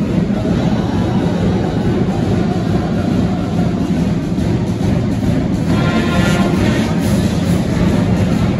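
A school band of clarinets, saxophones, brass and drums playing loudly, with a dense, muddy sound. The horns' tones stand out more clearly about six seconds in.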